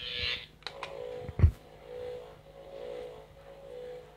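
A faint steady tone that swells and fades a few times, with one sharp knock about a second and a half in.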